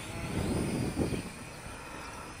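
Helicute H818HW Hero toy quadcopter's motors and propellers whining faintly and steadily as it hovers in flight.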